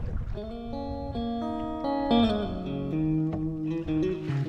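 Background music: a clean electric guitar, a Fender Stratocaster through a tube amp, playing a blues phrase in E, with single notes and chords changing quickly and one bent note about two seconds in.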